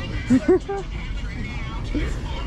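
Two short rising vocal sounds, a brief exclamation, about a third and half a second in, over a steady low rumble of street traffic.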